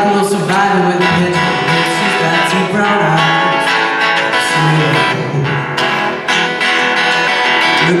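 A live band playing a song: strummed acoustic guitar over drums, with bass, keyboard and singing, steady and loud throughout.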